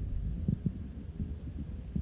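A small hatchback car pulling away, its low engine rumble fading as it goes, with a few soft low thumps.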